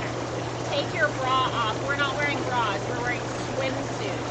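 Inflatable hot tub's air-bubble jets running: the water churns over a steady motor hum, with women's voices talking over it.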